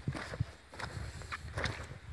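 A few soft, irregular footsteps and scuffs on sandy ground, with faint clicks.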